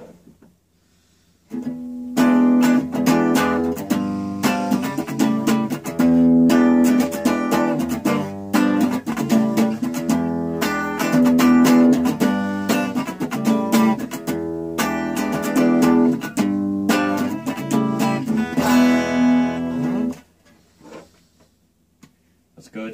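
Fender Stratocaster electric guitar on its middle-and-bridge pickup setting, played clean through a First Act M2A-110 10-watt practice amp with a 7-inch speaker. It comes in about two seconds in as a repeating picked riff with strummed chords and stops about two seconds before the end.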